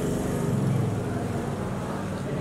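A low, steady engine rumble from a passing motor vehicle, easing off slightly after the first second.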